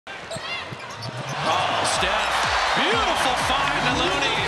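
Basketball game sound in an arena: a ball bouncing on the hardwood and shoes squeaking, over crowd noise that swells about a second and a half in.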